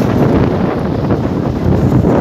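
Wind buffeting the phone's microphone: a loud, gusty low rumble.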